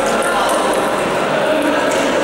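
A table tennis ball clicking off bats and the table a few times as a rally ends, over a steady hubbub of voices and other play in a large, echoing sports hall.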